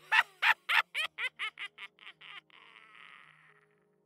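A man's sinister laugh: a run of about a dozen short 'ha' bursts, four to five a second, growing steadily quieter and fading out in an echo about three and a half seconds in.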